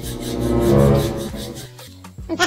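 A rasping, buzzing comedy sound effect that swells to a peak about a second in and then fades, played over background music.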